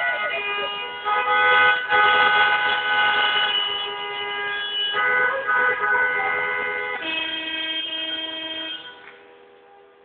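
Many car horns honking together in a street traffic jam: long, overlapping blasts at several pitches, starting and stopping, in celebration of a football win. The honking dies down near the end.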